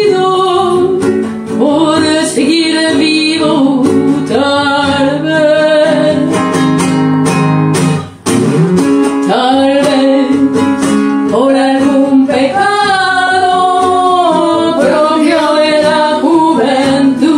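A person singing a song to their own classical guitar accompaniment, the guitar strummed and plucked under the voice. Past the middle the voice pauses for a couple of seconds while the guitar plays on, then the singing resumes.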